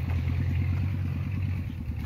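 An engine running steadily nearby, a low hum with a fast, even chugging pulse.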